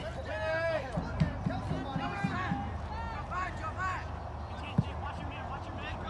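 Distant shouting voices of players and coaches on a soccer field, calling out in short bursts over a steady low background rumble. A single sharp thump sounds near the end.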